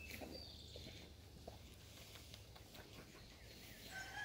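Near silence: quiet outdoor ambience with a few faint rustles and ticks of a camouflage jacket being handled.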